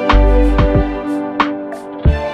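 Azerbaijani saz, a long-necked plucked lute, playing a slow melody of sharply plucked notes that ring on, over a deep bass.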